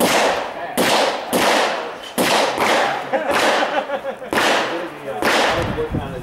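A string of eight pistol shots fired during a timed IDPA stage, roughly half a second to a second apart, each followed by a fading echo.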